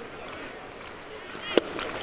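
Ballpark crowd murmur, then one sharp pop about one and a half seconds in: a pitch smacking into the catcher's mitt on a swinging strike.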